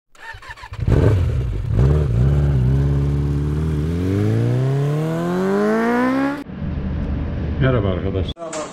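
Motorcycle engine blipped twice, held briefly, then accelerating with a steadily rising pitch that cuts off abruptly about six seconds in.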